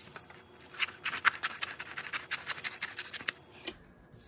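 Scissors cutting through a sheet of paper in a quick run of short snips, several a second. The snipping starts about a second in and stops just before the end.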